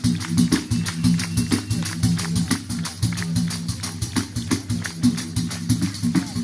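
Tammorra, a frame drum with jingles, beaten by hand in a fast, even rhythm, with an accordion holding steady chords underneath.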